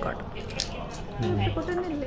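Small wet mouth clicks and smacks of eating during the first second, then a short, low voiced sound over the last part.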